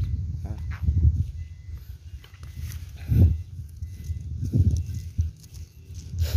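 Footsteps through grass and low, irregular thumps from a handheld phone being carried and lowered as the person walks along a tree row and crouches at a trunk.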